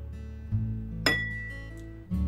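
Acoustic guitar background music plays. About halfway through comes a single sharp clink of kitchenware against a ceramic bowl, ringing on briefly as it dies away.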